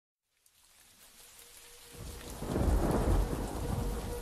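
Rain with rolling thunder, fading in from silence; the low thunder rumble swells about halfway through, with a faint held tone underneath.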